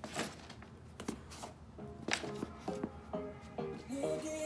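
A few light taps and rustles of a hand handling leather sneakers, then background music with short melodic notes coming in about two seconds in.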